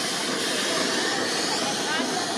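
Steady hiss of steam from a narrow-gauge steam locomotive standing with a strong plume of steam rising, mixed with the sound of passing road traffic.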